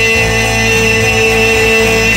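Live band music from electric guitar and keyboard, a chord held steadily without singing.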